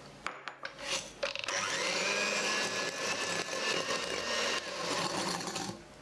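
A few light knocks, then an electric hand mixer runs steadily with a high motor whine, its beaters creaming soft butter with sugar in a glass bowl. The mixer cuts off shortly before the end.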